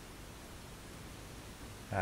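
Faint steady hiss: the background noise of a home video's soundtrack played back with the volume turned up.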